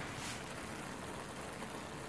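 A pan of rice with corn and bacon simmering on a gas burner turned down to its lowest setting, giving a steady, soft hiss as the liquid cooks off.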